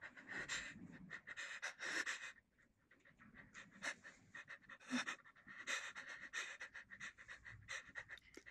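A person breathing heavily and unevenly close to the microphone, a faint run of breaths in and out.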